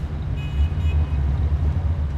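Low, steady rumble of a car's engine and road noise heard from inside the cabin.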